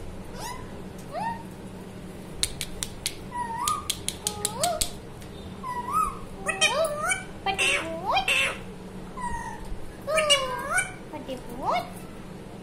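Ring-necked parakeet giving a run of short rising, bending whistled calls and chirps, with a quick series of sharp clicks about two and a half seconds in.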